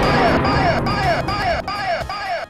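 Logo jingle: an electronic tone that rises and falls, repeating about two and a half times a second, with a voice shouting "fire" at the start and a noisy rumble underneath.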